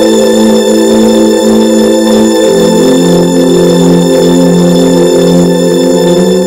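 Background music score: sustained, drone-like low chords that move lower about two and a half seconds in.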